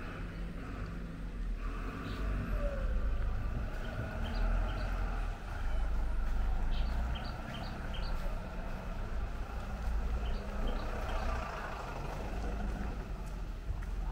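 A bus's diesel engine running with a steady low rumble.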